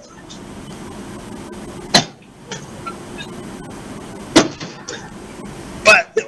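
Open telephone-line noise: a steady hiss with a low hum, broken by sharp clicks about two seconds in, again after four seconds and once more just before the end.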